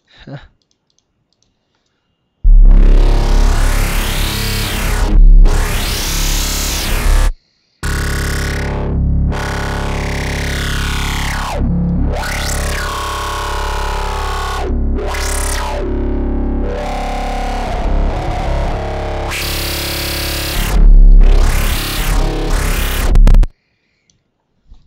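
A distorted dubstep growl bass from the ZynAddSubFX synthesizer, played very loud with a deep sub-bass under it. Its tone opens and closes in repeated wobbling filter sweeps, with the pitch sliding up and down. It starts about two and a half seconds in, breaks off briefly a third of the way through, and stops just before the end.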